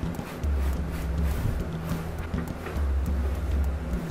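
Background music with a repeating low bass line, over short scratchy rustling and dabbing sounds of a gloved hand and paper towel wiping stain across a plastic mannequin leg.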